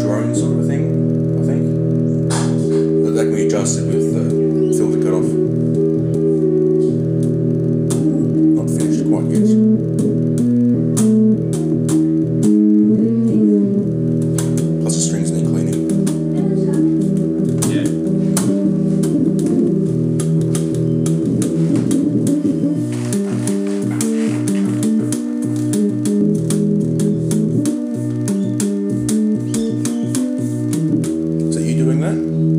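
Homemade two-string analog guitar synthesizer (the "Pipe" synth) being played by hand: sustained stacked synth tones that step from note to note, with a few slides in pitch and many sharp clicks over the notes.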